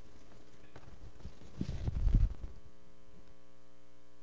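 A cluster of low thumps and knocks, loudest about a second and a half to two and a half seconds in, over a steady electrical mains hum.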